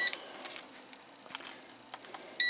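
A few faint, short clicks over quiet room noise: test probes and leads of a multimeter being handled and picked up.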